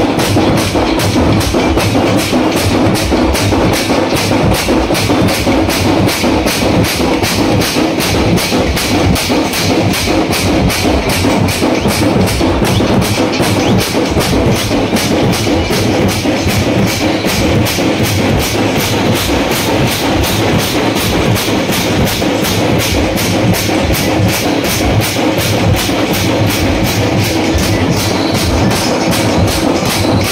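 Dappu frame drums beaten with sticks by a group of drummers in a loud, fast, even beat.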